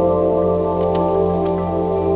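Ambient music of sustained, held chords, with a few light crackles of twigs layered over it about a second in.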